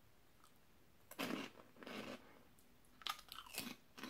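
Crisp cheese-flavoured Lay's Mix snacks (Bugles, Grits and Shells) crunched and chewed in the mouth, a few separate crunches starting about a second in.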